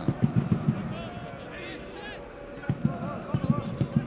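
Football stadium sound during open play: voices and shouts from the stands and pitch, over a run of rapid, irregular low thumps that ease off briefly in the middle.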